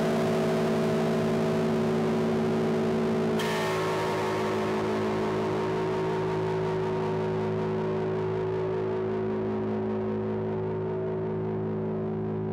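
Ibanez Gio six-string bass played through distortion and echo pedals, holding sustained chords. The chord changes about three and a half seconds in, then one long chord is left to ring, its upper overtones slowly fading away.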